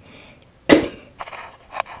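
Plastic paint bottles knocked and clattering as they are handled and moved about on the table: one sharp knock about two-thirds of a second in, then lighter clicks, and a short cough near the end.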